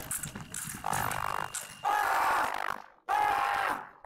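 A sabre fencer's loud yells after a scored touch: a shorter cry, then two long shouts about a second apart. Under the first of them is a thin steady electronic tone from the scoring apparatus signalling the hit.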